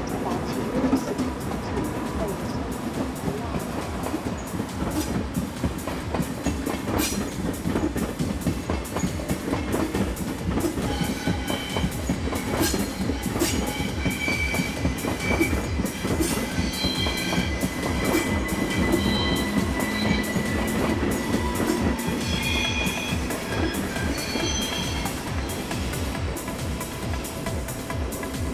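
Passenger trains rolling slowly through station pointwork, the wheels clattering in a rapid, uneven rhythm over switches and crossings. From about ten seconds in, wheel flanges squeal on the curves in high, steady tones that come and go.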